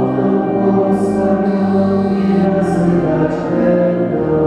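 A group of voices singing a hymn together, holding long sustained notes.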